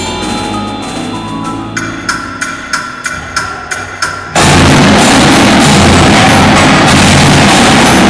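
Indoor percussion ensemble playing. Mallet keyboards ring softly, then comes a run of about eight sharp, evenly spaced pitched strikes, roughly three a second. A little over four seconds in, the whole ensemble comes in suddenly, loud and dense, with marching drums and front-ensemble keyboards together.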